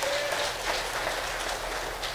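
Applause from a church congregation: many hands clapping, a dense steady patter.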